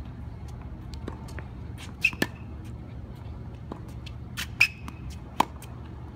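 Tennis ball being struck by racquets and bouncing on a hard court: a handful of sharp pops, some with a brief ringing ping, coming in pairs about two seconds in and about four and a half seconds in, then one more near the end. A steady low hum lies underneath.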